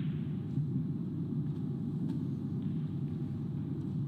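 Steady low hum of the snooker arena's room noise, with a few faint clicks of snooker balls about half a second and about two seconds in.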